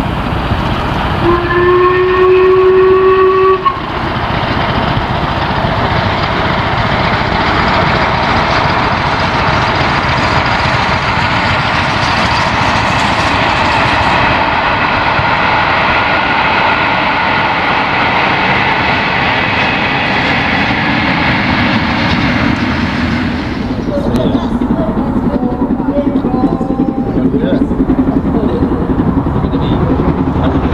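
LMS Princess Coronation class Pacific 6233 Duchess of Sutherland, a four-cylinder steam locomotive, working hard with a heavy train. One long whistle note sounds about a second in. Then comes the loud, steady noise of the engine and its coaches running past, and after a sudden change near the end, a quieter train noise.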